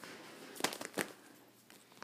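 A few faint clicks and taps, bunched about half a second to a second in, then near silence.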